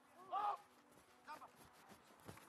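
Faint shouted calls from players on a rugby pitch: a short call about half a second in and a briefer one about a second later, heard thinly over the field ambience.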